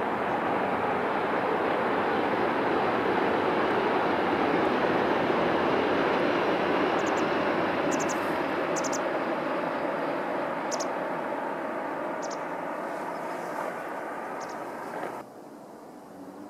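A Tohoku Shinkansen bullet train running past at speed on a distant viaduct: a steady rushing noise that swells, fades slowly and cuts off suddenly near the end.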